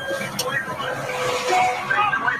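Indistinct voices over vehicle noise, with a sharp click about half a second in.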